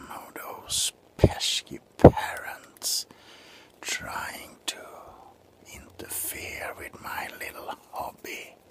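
A man whispering close to the microphone, with two low thumps about one and two seconds in.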